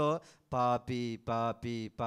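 A man's voice chanting short syllables on one steady pitch in an even rhythm, about two and a half a second, starting about half a second in after a brief pause.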